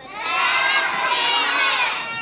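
A group of children shouting together, starting suddenly and holding for about two seconds.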